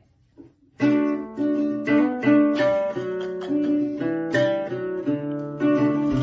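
Acoustic guitar being plucked, starting about a second in: a run of ringing notes and chords, one every half second or so.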